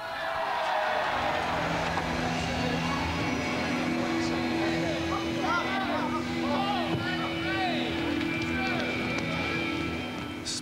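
Stage crew rushing a set change: equipment on wheels being rolled across the stage, with scattered background voices over a steady held chord that comes in about a second and a half in.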